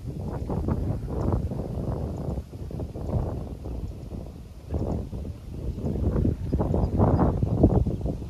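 Wind buffeting the microphone: a low, uneven rush that rises and falls in gusts, strongest near the end.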